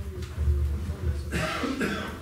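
A person coughs once, a short, harsh burst about one and a half seconds in, picked up by a handheld microphone. Before it there is a low rumble.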